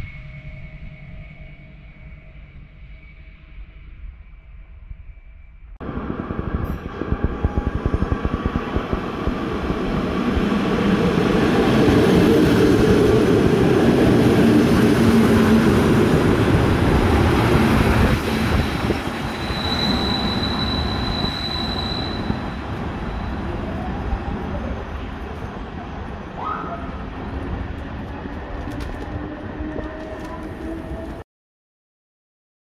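Electric passenger trains on the rails: quieter at first, then from about six seconds in a loud rush of train running noise that builds, holds, and slowly eases. Partway through there is a high steady squeal lasting about two seconds.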